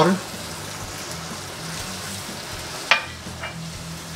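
Minced veal and corn frying in a pan with a steady sizzle while being stirred, with one brief sharp sound just before three seconds in.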